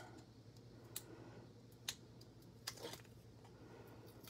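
Near silence with a few faint clicks and rustles of cardstock being handled, as the liner is picked off double-sided tape strips and the mini card is pressed into place.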